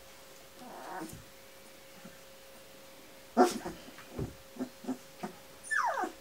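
Young Kuvasz puppies, about 18 days old, whimpering and squeaking: a loud sharp cry about three and a half seconds in, a few short squeaks after it, and a falling whine near the end.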